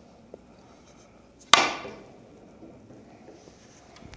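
A cue tip striking a carom billiard ball hard in one sharp crack about a second and a half in, with a short ringing tail.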